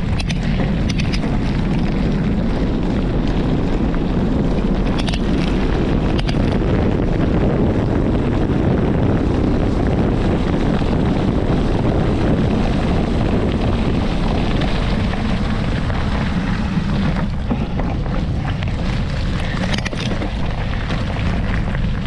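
A mountain bike rolling fast along a gravel forest track, heard from a bike-mounted camera: a steady low rumble of tyres on gravel and wind on the microphone, with a few brief clicks and rattles from stones and the bike.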